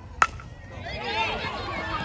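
A softball bat strikes the ball once, a sharp crack with a short ring about a quarter second in. Spectators shout and cheer as the batter runs.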